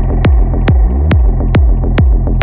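Psychedelic trance music: a kick drum about four and a half beats a second over a rolling, pulsing bassline, with a short rising synth sweep about a second in.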